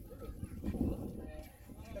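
Speech only: a voice talking quietly, the words not made out, falling away briefly near the end.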